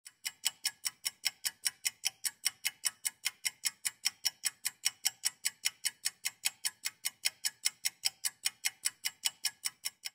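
Ticking clock sound effect: steady, rapid ticks at about five a second.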